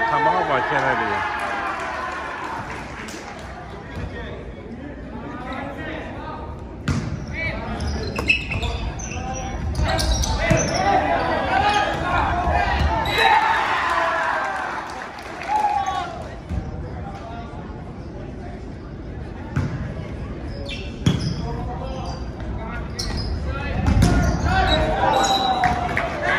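A volleyball being struck and bouncing on a hardwood gym floor, several separate sharp knocks spread through, echoing in a large gymnasium. Players' and spectators' voices come and go between them, loudest near the start and again near the end.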